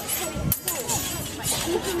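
Music playing, with one sharp metallic clash of longswords about half a second in.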